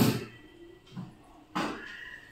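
Two sharp knocks or clatters, one at the start and another about a second and a half later, each fading quickly, with a fainter knock between them.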